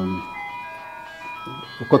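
A faint electronic tune of thin, steady notes stepping from pitch to pitch.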